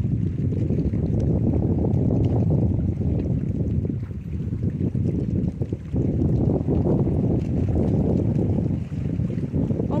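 Wind buffeting a handheld phone's microphone: a loud, low, fluctuating rush, with brief lulls about four, six and nine seconds in.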